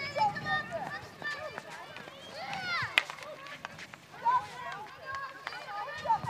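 Children's high voices calling and shouting to one another during a field hockey game, with a single sharp crack of a hockey stick striking the ball about halfway through.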